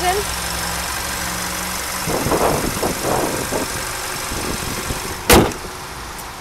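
2015 Kia Sorento's 2.4-liter GDI four-cylinder engine idling steadily, then a stretch of handling and rattling noise, and one loud thud about five seconds in as the hood is slammed shut.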